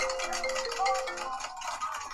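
A phone ringtone: a short melody of marimba-like notes stepping between a few pitches, ending a little past halfway through.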